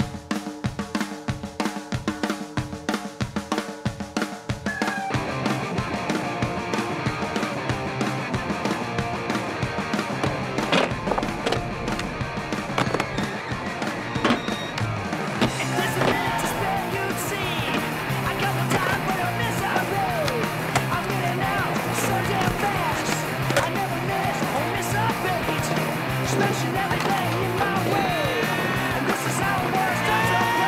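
Soundtrack music with a steady drum beat over skateboards rolling on a concrete skatepark, with sharp board clacks and landings now and then. The music fills out about five seconds in.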